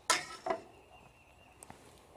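A serrated bread knife knocking on a wooden cutting board: one sharp knock, then a softer second knock about half a second later, followed by a small click near the end.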